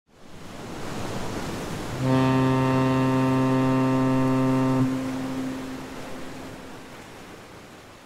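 A cruise ship's horn sounds one low, steady blast of about three seconds, starting about two seconds in, then dies away with a lingering echo over a hiss of wind and sea.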